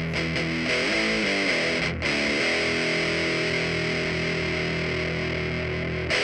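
Guitar playing the outro of a homemade song, then a chord held and left to ring; a short break in the sound about two seconds in.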